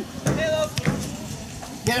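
Sideline shouting at a soccer match: a short call, a single sharp knock about a second in, then a loud shout of "Come on!" starting near the end.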